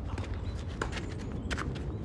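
Tennis footwork on a clay court, quick light scuffing steps, with two fainter sharp knocks of the ball being hit from the far side and bouncing, one a little before halfway and one near the end.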